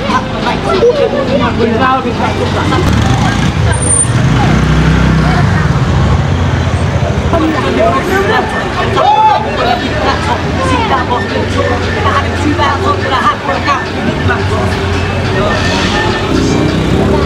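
A crowd of young men talking and calling out over one another, with street traffic and a vehicle engine running underneath.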